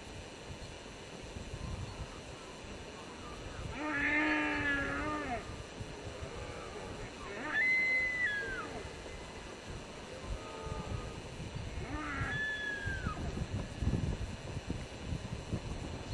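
A red deer stag roaring once, a long call about four seconds in, followed by two shorter, high whistle-like calls, the first holding then falling away.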